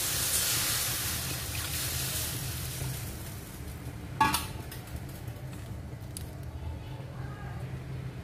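Water poured into a hot wok of sautéed tomato and pineapple, hissing and sizzling as it hits the pan, the hiss dying away over the first few seconds. A single sharp knock about four seconds in, over a steady low hum.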